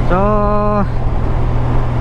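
Honda Gold Wing's flat-six engine humming steadily at expressway cruising speed, under constant wind and road rush. The rider draws out a "So" near the start.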